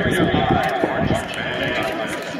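Crowd of spectators chattering in the stands, many overlapping voices at a steady level.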